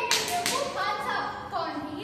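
Young performers' voices delivering lines, opened by a short sharp clap-like smack at the very start.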